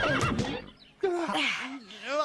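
Cartoon horse neighing: a short wavering call at the start, then after a brief pause a longer run of rising and falling neighs.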